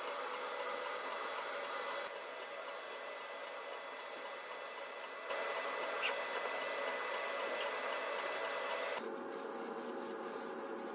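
Hand rubbing and sanding on a walnut wooden box, a steady scratchy hiss with a thin high whine underneath, changing abruptly about 2, 5 and 9 seconds in.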